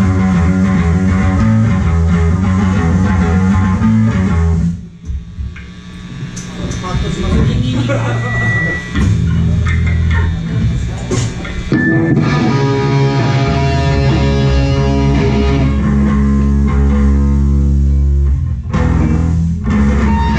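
Live rock band playing loud electric guitars, bass and drums. About five seconds in the band drops out suddenly to a quieter, sparser passage, then builds back to long held chords, with another short break near the end.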